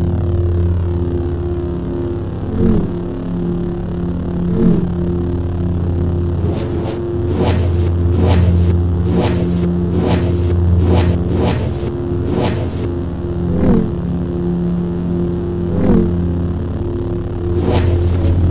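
Lightsaber sound effect: a steady low electric hum with short whooshing swing sounds that bend in pitch, single swings a couple of seconds apart and a quick run of swings in the middle.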